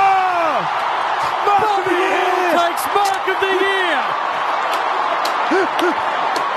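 A commentator's long held exclamation that falls away in pitch about half a second in, then shorter excited shouts, over the steady roar of a stadium crowd at a football match.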